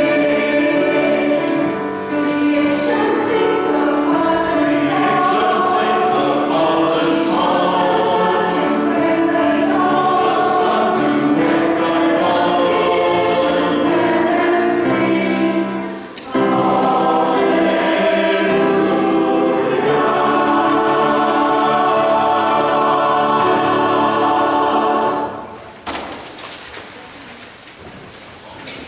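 Mixed church choir singing a Christmas anthem in parts, with a short break between phrases about halfway through. The piece ends a couple of seconds before the close and the sound drops away.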